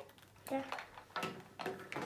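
A girl saying "yeah", with light crinkling and clicking of plastic blind-bag toy packaging being handled and opened.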